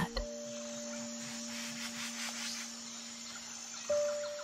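Soft background music: a few sustained, pure-sounding notes held steadily, with a new higher note coming in near the end.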